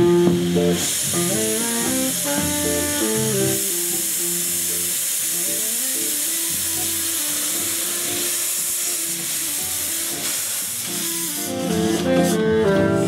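Small narrow-gauge steam tank locomotive blowing steam from its open cylinder drain cocks as it moves off: a steady loud hiss that starts about a second in and stops near the end, with a jazz band playing underneath.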